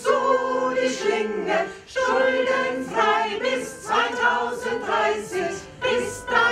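Mixed choir of men and women singing together in short, rhythmic repeated notes, with a brief breath-like break about two seconds in.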